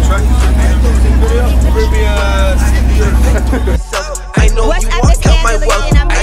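Hip hop track with a heavy, sustained bass line under a rapped vocal. About four seconds in, the beat drops out briefly, then comes back with a string of deep bass hits.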